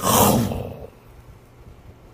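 A man's voice roaring into a microphone in imitation of a lion: one harsh growling burst of about a second that dies away.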